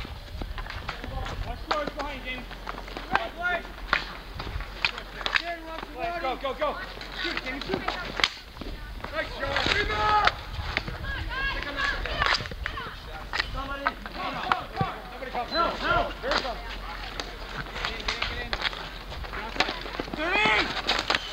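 Players shouting and calling out during a street hockey game, with repeated sharp clacks of sticks and ball striking the asphalt.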